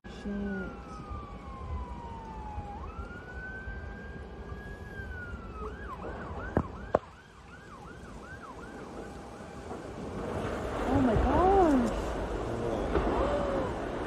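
Emergency vehicle siren, first wailing slowly down and back up, then switching to a fast yelp of about four sweeps a second. Two sharp cracks come close together in the middle. Louder voices rise near the end.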